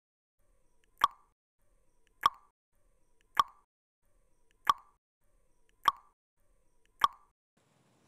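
Countdown timer sound effect: six short pops spaced about a second apart, with near silence between them.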